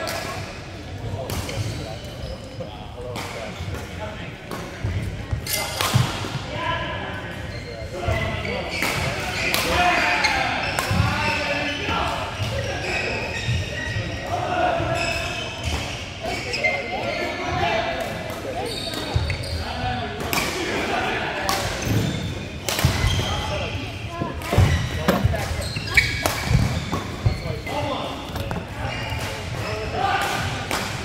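Badminton rally: rackets smacking a shuttlecock in sharp, irregular hits, a second or so apart at times, ringing in a large hall, over players' voices.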